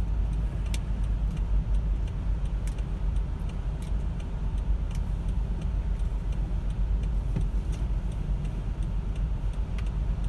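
Car engine idling, heard inside the cabin as a steady low rumble, with the turn indicator ticking at an even pace for a right turn.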